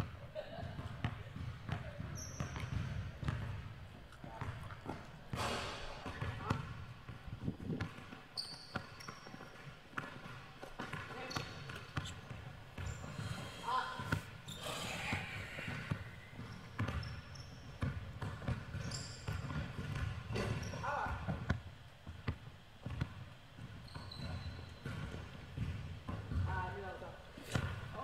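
A basketball being dribbled on a hardwood gym floor, repeated bounces echoing in a large gym, with occasional brief high sneaker squeaks on the court.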